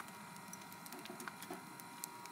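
Wood fire burning in a small metal fire pit, giving off faint, sparse crackles and pops, a few of them sharper near the middle.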